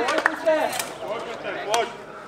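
Men's voices calling out briefly across an open court, with a few sharp claps or knocks near the start and another near the end.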